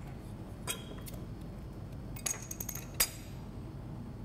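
Glass beer bottles clinking as they are handled and set on a bar top: a light clink about a second in, then a quick run of clinks past the halfway mark ending in one sharp click.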